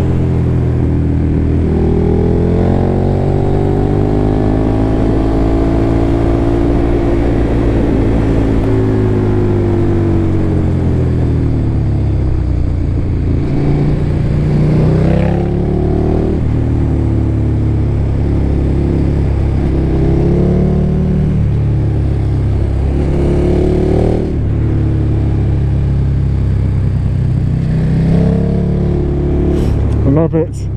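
KTM motorcycle engine heard on board through a helmet microphone while riding, with wind rush. Over the first ten seconds the engine note slowly rises and falls back, then it climbs sharply in four short bursts of acceleration.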